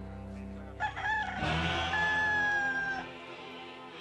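A rooster crows once, starting about a second in: a call of about two seconds that rises, then holds a long, slightly falling note. Background guitar music plays underneath.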